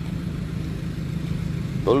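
A motor vehicle's engine idling steadily with a low, even hum.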